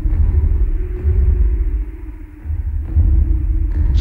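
A deep, heavy electronic rumbling drone with a faint steady hum above it, dipping briefly about halfway through.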